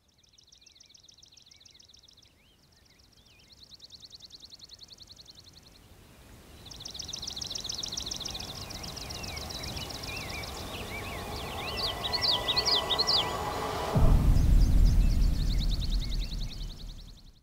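Outdoor birdsong: several spells of fast, high trills with short chirping calls between them, and a brighter warbling phrase near the end. A loud low rumble comes in about two seconds before the end.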